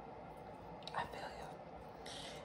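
Mostly quiet room tone, with one brief soft whispered sound about a second in.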